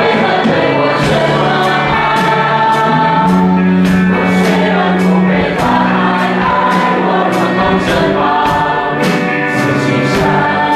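A group of voices singing a Mandarin Christian worship song to band accompaniment, with drums keeping a steady beat.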